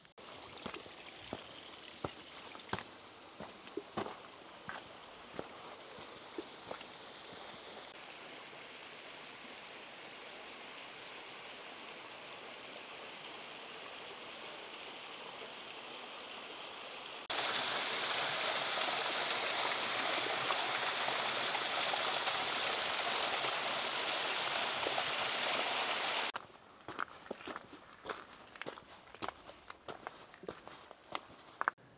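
A mountain stream rushing steadily, with footsteps clicking on the rocky trail in the first few seconds and again near the end. Just past halfway a much louder rush of water cuts in, then stops suddenly about four seconds before the end.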